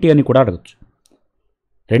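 A voice speaking Telugu for about half a second, then a pause with a few faint clicks, and the voice starts again right at the end.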